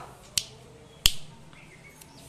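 Two sharp clicks about two-thirds of a second apart, the second much louder.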